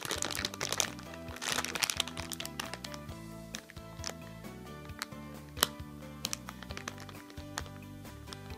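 Background music with held notes that change every so often, over the crinkling and crackling of a clear plastic bag being squeezed and handled, with the crackles busiest in the first couple of seconds.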